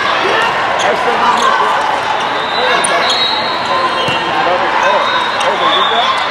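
A volleyball rally on an indoor court: sharp ball contacts and short high sneaker squeaks over a steady mix of many voices, players calling and spectators chattering.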